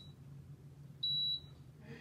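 Power XL air fryer's control panel giving a single short, high electronic beep about a second in, acknowledging the dial turned to the Air Fry preset.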